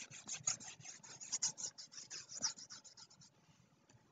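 Faint, quick scratchy strokes of a stylus rubbing back and forth on a drawing tablet as handwriting is erased; the scratching stops about three seconds in.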